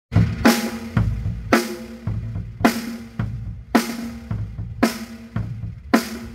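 Acoustic drum kit playing a slow, steady beat: kick drum and snare alternate, with a ringing snare hit about once a second and a kick between each pair of snare hits.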